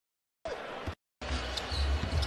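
A basketball being dribbled on a hardwood arena court, a few bounces against steady crowd noise. The sound cuts in briefly, drops out, and then resumes just over a second in.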